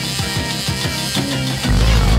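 Background rock music with a steady drum beat; a heavier, louder bass part comes in near the end.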